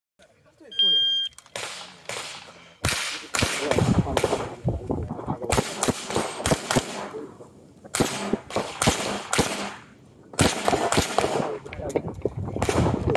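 An electronic shot timer gives one short high beep. Then a GSG Firefly .22 LR pistol with a muzzle brake fires many sharp cracks in quick pairs and strings, with short pauses between them.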